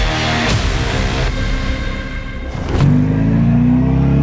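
Short musical logo sting that opens with a whoosh. About three seconds in it gives way to the Skoda Fabia RS Rally2's turbocharged 1.6-litre four-cylinder engine, rising steadily in pitch as the car accelerates away.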